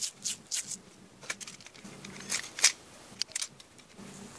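Black tape being peeled off its roll and wrapped around the end of a pipe, a string of short, irregular crackling rips and rustles, the loudest a little past halfway.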